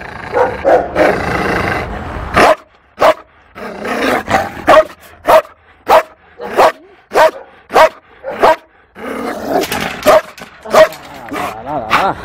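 Belgian Malinois barking repeatedly, short sharp barks about one or two a second, with stretches of growling between them near the start and again near the end: a fearful shelter dog grumbling at the person by her kennel.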